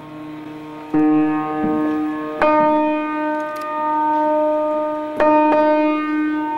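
Slow chords played on a keyboard instrument, each held for a long time. New chords come in about a second in, again at about two and a half seconds, and twice in quick succession near the end.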